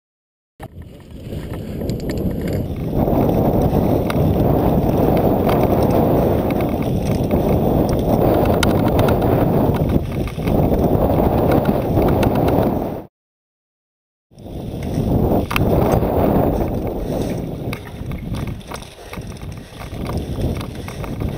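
Wind rumbling on the microphone of a camera moving along a mountain-bike trail, with scattered clicks and rattles from the bike over rough ground. It starts half a second in and drops out for about a second a little past the middle.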